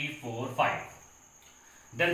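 A man's voice speaking briefly for about the first second, then a pause. Under it runs a steady, faint, high-pitched whine.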